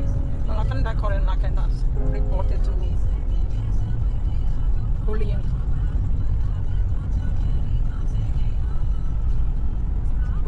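Steady low rumble of a car's engine and tyres on the road, heard from inside the moving car's cabin.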